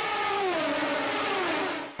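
Race car engine running at speed, one long steady note whose pitch slowly falls, over a hiss.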